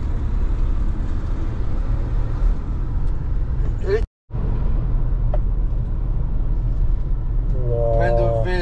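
Steady low road and engine rumble inside a moving car's cabin. It cuts out completely for a split second about four seconds in.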